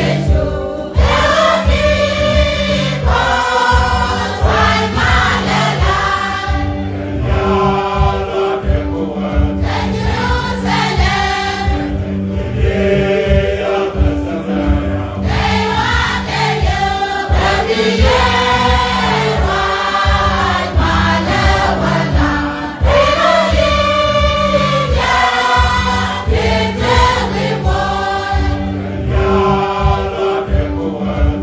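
A large church choir singing a hymn in Nuer, with a steady low accompaniment underneath.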